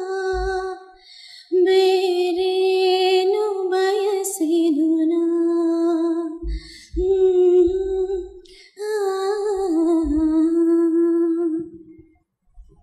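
A young woman singing solo into a microphone: a slow, gentle melody of long held notes with a slight waver, sung in phrases with short breath pauses about a second in and again near seven and nine seconds. No instruments are heard.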